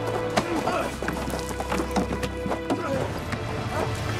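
Background music with the footsteps of two people running over rock, a string of sharp steps, and short effortful grunts from the runners.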